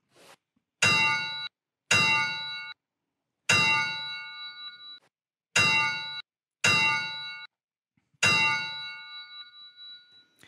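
Six sharp metallic clangs from a transition sound effect, irregularly spaced. Each rings with several bright overtones for about a second before being cut off abruptly, and the last rings out longer and fades.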